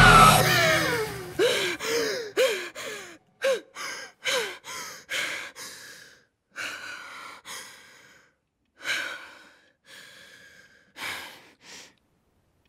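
A woman sobbing and gasping for breath: short whimpering catches that fall in pitch, then ragged breaths coming quieter and further apart. A loud scream over music dies away in the first half second.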